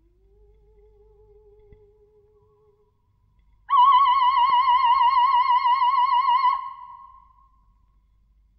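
Solo soprano voice singing a very soft, low held note with vibrato. After a brief pause she leaps to a loud high note with wide vibrato, holds it for about three seconds and lets it fade away.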